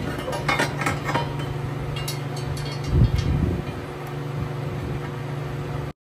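Metal clinks and taps as a stainless turbo exhaust manifold is handled and fitted onto a Coyote V8, over a steady low hum, with a dull thump about halfway through. The sound cuts off abruptly just before the end.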